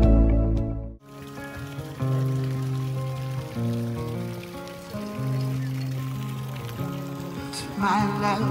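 An edited music track cuts off about a second in, followed by quieter live music with held bass notes and changing chords from the patio's performer, over a faint haze of outdoor background noise.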